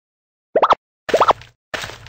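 Cartoon "bloop" sound effects: two pairs of quick, upward-sliding pops, about half a second apart, followed near the end by a short, softer rustling burst.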